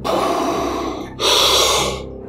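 Darth Vader–style respirator breathing: two long, mechanical breaths, the second one, starting about a second in, louder and brighter than the first.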